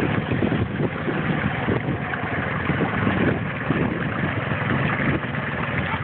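A quad ATV engine running steadily while the machine sits bogged down in deep mud.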